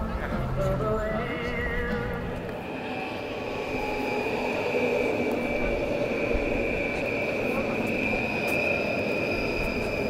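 Train running along the track, with a steady high squeal from about three seconds in, over voices of people walking by.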